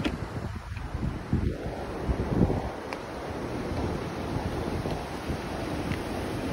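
Wind buffeting the microphone in uneven gusts over the steady rush of sea surf breaking against rocks.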